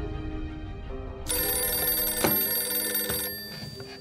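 A dark, low music score fades over about the first second. Then an old-fashioned desk telephone's bell rings for about two seconds and dies away.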